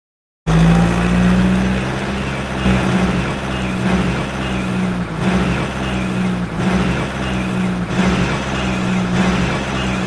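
Car engine driving sound effect: a loud, steady engine drone that cuts in suddenly about half a second in and swells slightly about every second and a quarter.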